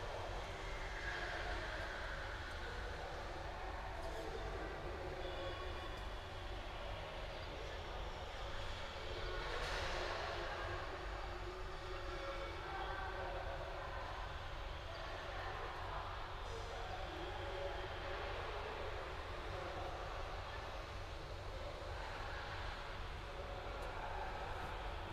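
Steady low rumble of background noise in a large hall, with faint far-off voices now and then.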